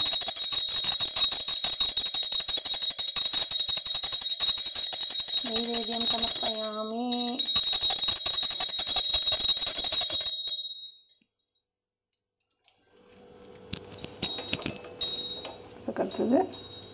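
A small brass puja hand bell rung continuously with rapid strikes, giving a bright, high ringing that stops abruptly about ten seconds in.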